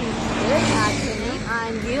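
Highway traffic passing, with a heavy vehicle's engine giving a steady low drone, under a young woman's voice talking.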